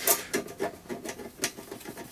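Hands and a cloth handling and rubbing a clear plastic turntable dust cover, making a string of small irregular clicks and scratchy scrapes.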